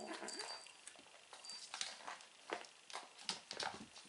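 Kittens mewing briefly at the start and again near the end, with light taps and scuffles of play on a wooden floor in between.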